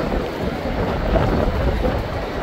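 Wind buffeting the microphone, a steady loud rumble with the chatter of a large crowd underneath.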